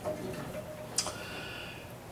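A single sharp click about halfway through a quiet pause, over faint room tone.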